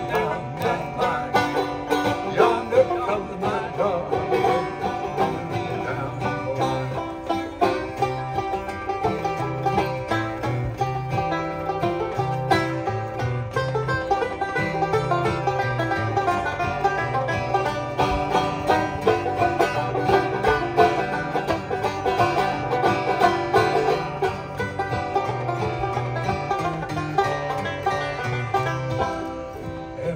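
Banjo and acoustic guitar playing an instrumental break together in a folk song, the banjo's picked notes in front over the guitar's steady rhythm.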